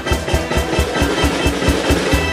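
Sixties-style Greek pop band playing an instrumental passage without singing, driven by a quick, steady drum beat.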